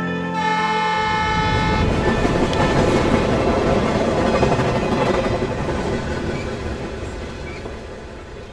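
Train horn blowing one chord for about a second and a half, then the rumble of a passing train building up and fading away.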